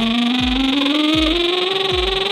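Band music: one held note sliding slowly upward in pitch, over a deep kick drum hitting about every three-quarters of a second.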